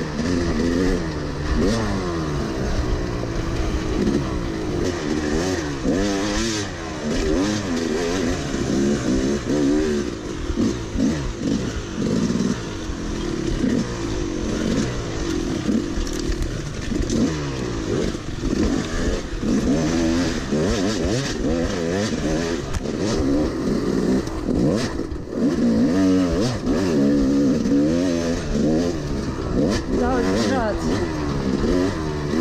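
Dirt bike engine heard from on board the bike being ridden, revving up and dropping back over and over as it is pushed hard along a rough narrow trail. Knocks and rattles come in from the bumps.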